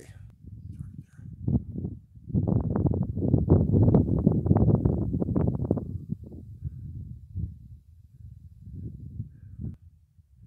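Wind buffeting a camera microphone: a low rumble with small crackles, gusting up about two seconds in and easing after about six seconds into lighter, patchy rumbles.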